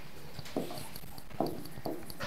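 A stylus knocking and tapping on the glass face of an interactive display board while handwriting, a few short hollow knocks about half a second apart.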